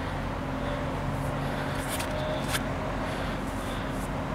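A steady low engine drone, with a couple of faint clicks about halfway through.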